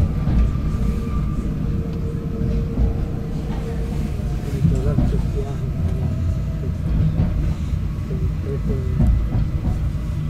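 Narrow-gauge electric railcar running at speed, heard from inside the car: a steady low rumble of the wheels on the track, with a faint steady whine held for the first four seconds or so.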